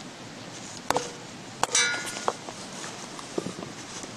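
Light knocks and metallic clinks as a knife, wooden handle and enamelware pot are handled on a log. One clink about two seconds in rings briefly with several high tones.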